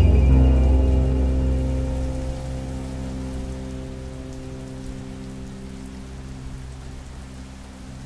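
Rain falling, heard over a low sustained musical drone; the whole fades steadily toward quiet.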